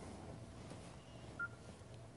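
A single short electronic beep from a Nokia 5800 XpressMusic phone about one and a half seconds in, over faint room tone.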